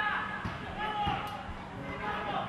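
Children's voices calling out on a football pitch, short pitched shouts, with a few dull thuds of the ball.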